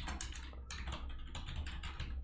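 Rapid typing on a computer keyboard, a quick run of keystrokes at about six or seven a second.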